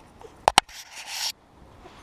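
Two sharp clicks in quick succession, then a short rustling hiss.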